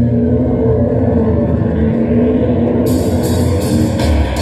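Live rock band: a sustained electric guitar chord rings over a low bass drone, and cymbal strikes come in on a steady beat about three seconds in.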